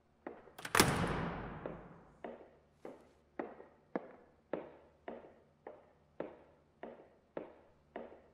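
A loud thud about a second in, its echo dying away slowly, then steady footsteps on the stage, a little under two a second, each one echoing around the empty concert hall.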